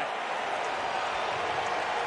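Stadium crowd noise: a steady wash of cheering and applause after a home run.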